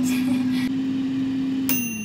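Philips air fryer's fan running with a steady hum. Near the end the timer bell dings once and rings on, and the fan winds down with falling pitch: the 15-minute cooking time has run out.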